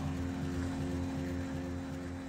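Car driving past on the road, its engine and tyre hum slowly fading away.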